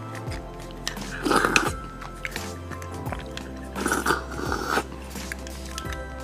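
Close-miked eating sounds: a person chewing soft bone marrow with wet mouth noises and small clicks. There are two louder bursts of chewing, about a second in and about four seconds in. Background music plays throughout.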